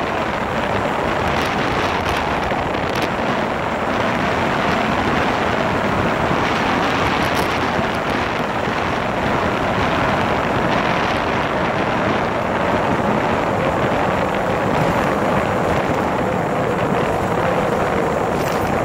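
Steady rush of wind on the microphone from a moving motorcycle, with the engine running steadily underneath.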